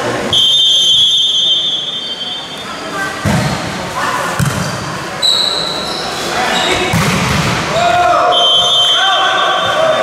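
Referee's whistle blown for the serve, then a rally of volleyball hits sounding in a big echoing hall, the hardest about seven seconds in as the ball is spiked, with players shouting. The whistle sounds again near the end, stopping the rally.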